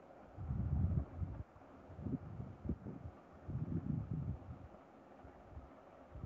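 Low, muffled rumbling on the microphone in three irregular bursts, each about a second long, over a faint steady hiss.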